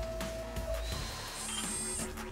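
Intro music layered with machine sound effects: a run of mechanical clicks and a steady tone, then a high whine that comes in near the end.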